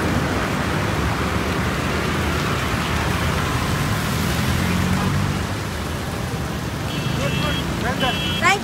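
Slow road traffic on a wet road: car engines running and tyre hiss on wet asphalt, with one vehicle passing close about halfway through. A short high-pitched tone sounds near the end.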